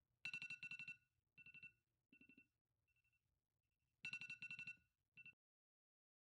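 Smartphone alarm ringing: bursts of rapid pulsed electronic beeps that fade in the middle and come back loud about four seconds in. It cuts off suddenly a little after five seconds, as the alarm is stopped.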